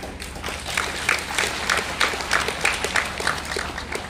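Audience applauding with many overlapping hand claps, dying away near the end.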